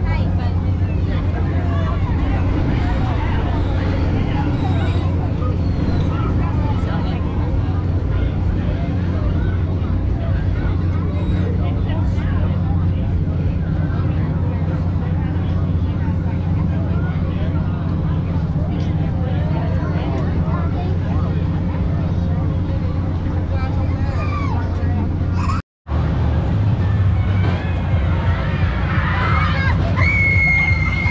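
Fairground ambience: a steady low hum of running ride machinery under a babble of people's voices, with a brief break about 26 seconds in.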